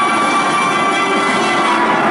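Live large ensemble playing a dense, sustained cluster of horn notes over percussion, many pitches held at once.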